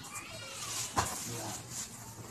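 High-pitched voices chattering in the background, with one sharp knock about a second in.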